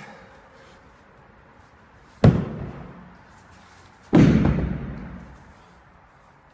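A 185 lb atlas stone landing heavily twice, about two seconds apart, as it is loaded to a 50-inch height and dropped back to the floor; each thud has a booming tail, the second longer.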